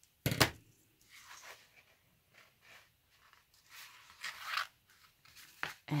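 Scissors giving one sharp snip through thin elastic cord, trimming its fraying end, followed by soft scattered rustles and light clicks as the foam cover and elastic are handled and turned.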